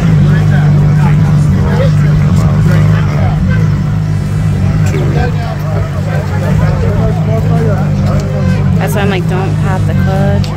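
A car engine idling with a steady low drone, with several people talking over it.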